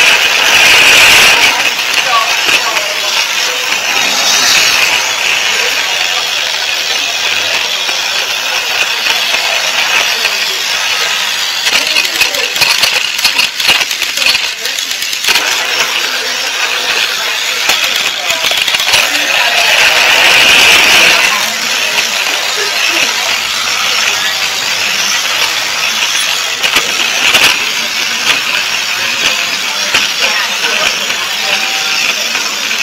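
A battery-powered toy train's small motor and gears run steadily, heard right on board. Its wheels click over the joints of blue plastic track, and the run grows louder briefly about a second in and again around twenty seconds in.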